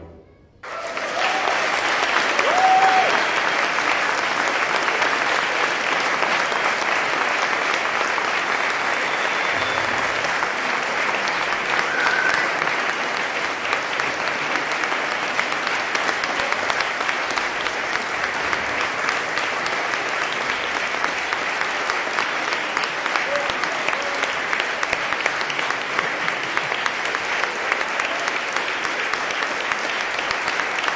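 After a brief silence, an audience applauds steadily.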